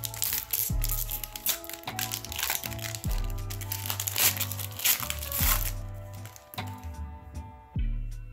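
Trading card pack wrapper crinkling and tearing as it is opened by hand, heard over background music with a steady beat. The crackling thins out in the last couple of seconds as the cards come out.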